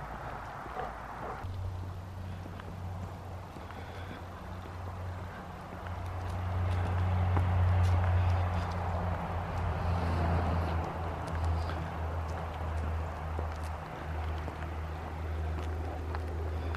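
Footsteps walking on an asphalt road, with a steady low hum underneath that sets in about a second and a half in and is loudest around the middle.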